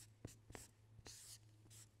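Marker pen writing on a flip chart: faint squeaks and taps of short letter strokes, with one longer squeaking stroke about a second in.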